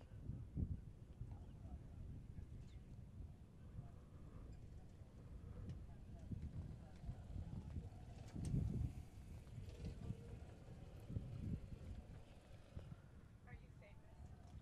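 Quiet open-air ambience: a low, uneven rumble with faint, indistinct voices in the distance.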